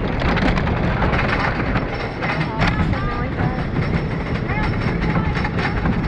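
Wooden roller coaster train climbing the chain lift hill: a steady rumble with rapid clicking and clanking of the lift chain and anti-rollback ratchet, with riders' voices over it.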